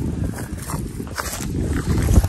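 Wind buffeting the microphone in an open field, an irregular low rumble that swells and dips.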